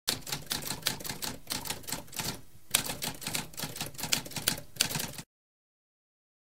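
Typewriter typing: a fast run of keystroke clacks with a brief pause about halfway, cutting off suddenly near the end.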